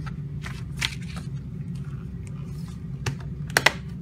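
A plastic Blu-ray case and its paper inserts being handled as the inserts go back in: scattered light clicks and rustles over a steady low hum, with two sharp clicks close together near the end.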